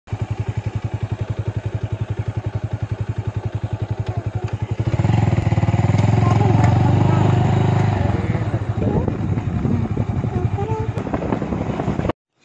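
A small vehicle engine running with a rapid, even beat, growing louder from about five seconds in as it works harder for a few seconds. Voices talk over it in the second half.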